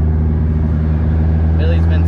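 Car engine running at a steady cruise in an open-cockpit car, a low even drone heard from the driver's seat. A voice begins near the end.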